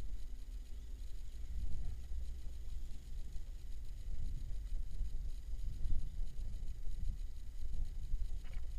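Wind buffeting a small camera microphone, giving a low, uneven rumble that rises and falls.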